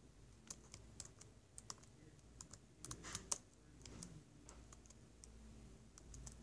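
Faint, scattered clicking of a laptop keyboard, with a short run of louder clicks about three seconds in.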